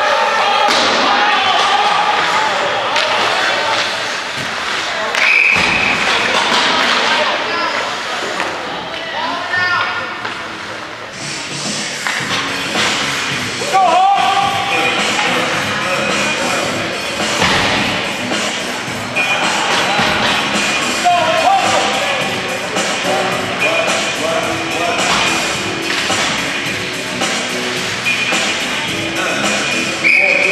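Ice hockey rink sound during a game: thuds of pucks and players against the boards and shouting voices, with a short referee's whistle blast about five seconds in. Music plays in the background.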